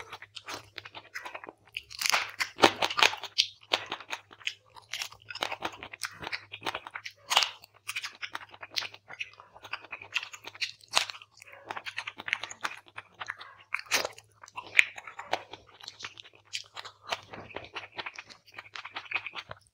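Close-miked chewing and crunching of fried quail: many sharp, irregular crunches as the meat and small bones are bitten and chewed.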